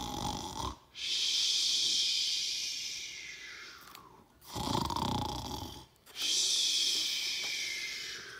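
A person imitating loud snoring: two snores, each a short rumbling in-breath followed by a long hissing out-breath that slowly fades away.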